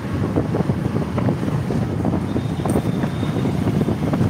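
Wind buffeting the microphone on a moving motorbike, over the bike's engine running steadily.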